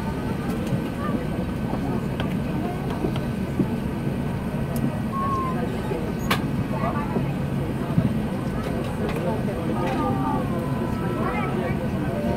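Cabin noise of an Airbus A380 taxiing after landing: a steady low rumble from the engines and the rolling aircraft, with passengers talking faintly in the background and a couple of sharp clicks.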